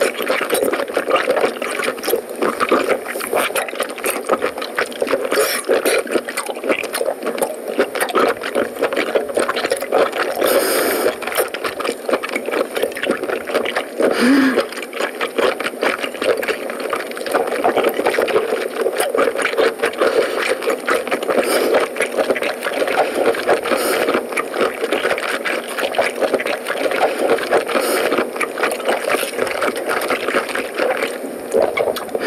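Close-miked chewing of boiled octopus tentacle: continuous wet, sticky mouth sounds with many small clicks.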